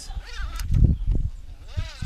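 A ratchet strap is pulled off an aluminium frame: a dull knock of strap and buckle handling about a second in, with short pitched sounds that rise and fall before and after it.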